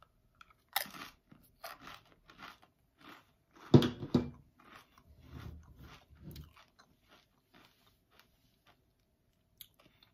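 Crunching as a plain chip topped with taco sauce is bitten and chewed. The crunches are loudest about four seconds in and die away after about six and a half seconds.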